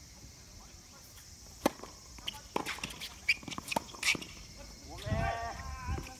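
Tennis doubles rally: a quick run of sharp pops of the ball off strings and court, about five in two and a half seconds, then a player's shout near the end as the point finishes.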